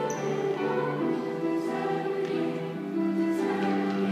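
A middle-school vocal group singing a pop song together with musical accompaniment, holding long sustained notes.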